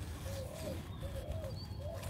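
A bird cooing nearby: a run of short, soft, low arching notes, a few a second, over a steady low rumble.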